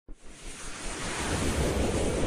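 A rushing, wind-like noise swell that starts just after the beginning and builds steadily in loudness, with a low rumble underneath: the whoosh sound effect of an animated logo intro.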